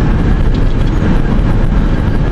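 Steady low rumble of road and engine noise inside the cabin of a vehicle driving at speed on a highway.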